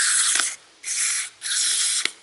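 Aerosol carburetor cleaner sprayed through its straw into a dirty engine part in three short hissing bursts, each about half a second long.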